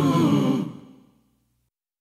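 Sung vocals holding a last phrase that fades out to silence just over a second in, ending the song.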